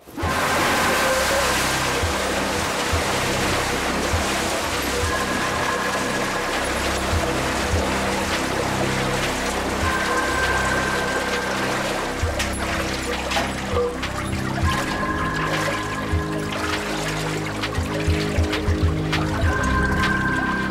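Water pouring and splashing steadily into a clear tube, under a tense music score with shifting low notes and a pair of high held tones that come and go every few seconds.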